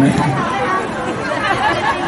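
Audience chatter: several people talking at once close by, with no music playing.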